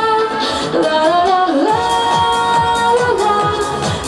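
A woman singing a melody of long held notes with slides between them into a microphone, amplified through stage speakers over a backing track with a steady beat.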